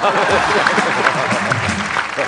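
Studio audience applauding, with laughter mixed in, in reaction to a punchline.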